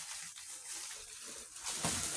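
Bubble wrap rustling and crinkling as a boxed toy is pulled out of it, a steady crackly rustle that grows a little louder near the end.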